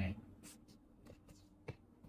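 Faint rustling and light clicks of hands handling a pair of synthetic turf football boots, with one sharper click near the end.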